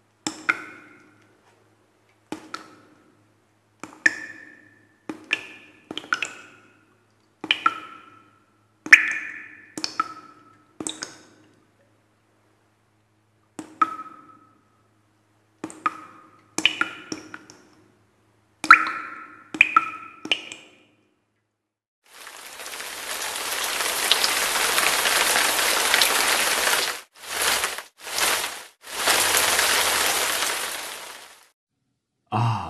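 Single water drops plinking into water at irregular intervals, each with a short ringing pitch, then about 22 seconds in a loud rush of running water that cuts out twice briefly near the end.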